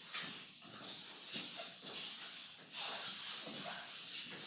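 A cloth wiping chalk off a blackboard: repeated swishing strokes, back and forth, each swelling and fading.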